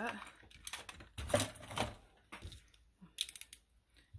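A plastic snap-off box cutter being handled: scattered clicks and knocks, then a quick run of sharp ratcheting clicks just past three seconds in as its blade is slid out.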